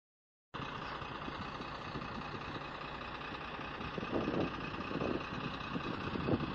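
A vehicle engine idling steadily, starting about half a second in, with a few low swells in the middle.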